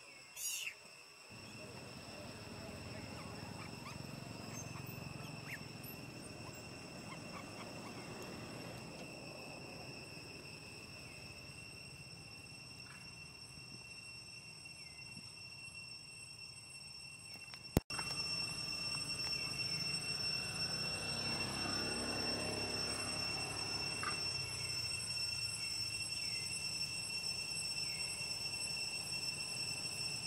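Insects droning in a steady high tone over a low outdoor background hum, with a brief high squeak at the very start. About two-thirds of the way through the sound jumps abruptly and gets louder, and after that faint short chirps repeat every second or two.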